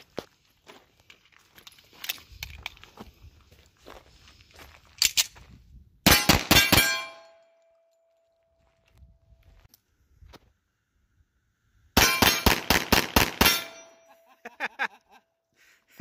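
Tisas 1911A1 Service .45 ACP pistol fired in two quick strings of shots, about four shots around six seconds in and about seven or eight shots near twelve seconds in. Each string is followed by steel targets ringing on for a few seconds.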